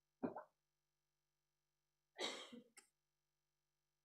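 Near silence, broken by two brief faint mouth noises from a man: a short smack just after the start and a longer breathy sound about two seconds in.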